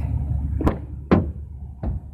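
An SUV's rear side door being opened by hand: three sharp clicks and knocks from the handle, latch and door, the loudest about a second in.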